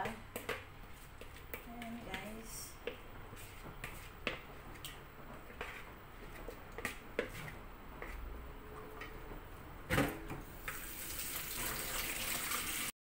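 Leftover marinade being scraped and tipped out of a bowl into a stainless steel pot: scattered light taps and clicks, a louder knock about ten seconds in, then a steady hiss near the end.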